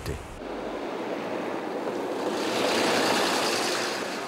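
A vehicle passing on a road: a rushing swell of tyre and engine noise that builds to a peak about three seconds in, then fades.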